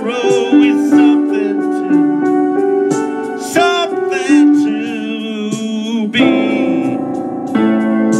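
A man singing into a close microphone over a sustained electric-keyboard accompaniment, the notes held long with a wavering vibrato; the keyboard chords thicken about six seconds in.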